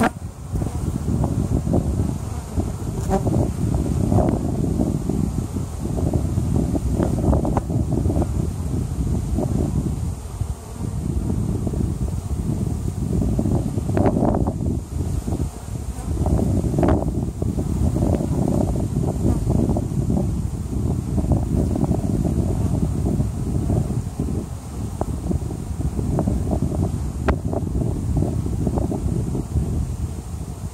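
Dense, steady buzzing of a honey bee colony on an opened hive. A few short sharp clicks break through the buzz, around a third of the way in, about halfway and near the end, as the hive tool and wooden frames are handled.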